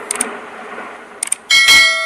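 Subscribe-button end-screen sound effects: a fading rushing noise with two quick mouse double-clicks, then a bright notification-bell ding about one and a half seconds in that rings on as it fades.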